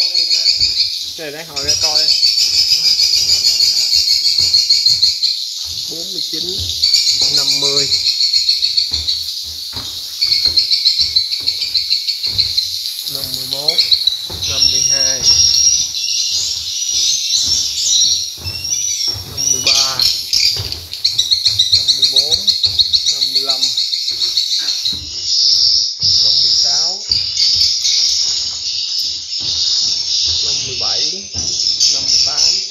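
Recorded swiftlet calls played through tweeter speakers in a swiftlet house: a dense, continuous high chirping twitter, with shorter, lower chirps breaking in every second or two.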